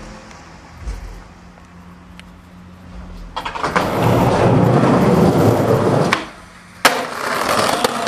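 Skateboard wheels rolling loudly for about three seconds starting a little past three seconds in, then a single sharp smack of the board hitting the ground about seven seconds in, followed by more rolling.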